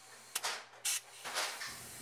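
Valve spring compressor with an air hose working on an aluminum cylinder head: three faint, short clicks about half a second apart.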